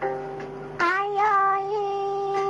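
Chầu văn singing: a plucked đàn nguyệt (moon lute) note rings at the start, then about a second in a woman's voice enters on one long held note with a slight waver.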